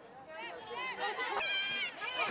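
Several high-pitched voices shouting at a soccer match, overlapping rising-and-falling calls that start a moment in and grow louder, with one call held near the end.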